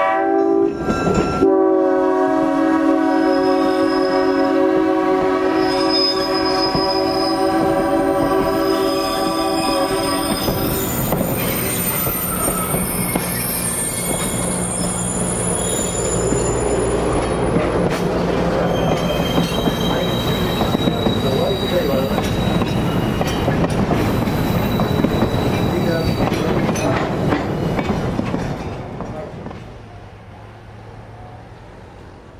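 Train horn sounding one long steady chord for about the first ten seconds as the cars pass close by. Then the passenger cars' wheels rumble and clack over the rails with thin high wheel squeals, fading near the end as the train moves away.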